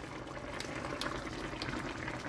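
Sauce of chicken thighs simmering in a frying pan, a steady low bubbling with a few faint small pops.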